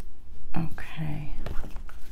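A woman murmuring half-whispered words to herself as she reads, with a few light clicks.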